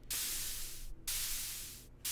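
White-noise bursts from a modular synthesizer, shaped by a clock-triggered envelope and passed through the 7 kHz high-pass filter of a Bastl Propust passive filter module. Two sharp hissing strikes a second apart each fade out, sounding almost like a hi-hat.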